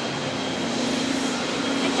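Heavy rain falling as a steady hiss, with a steady low drone of jet airliners on the apron underneath it.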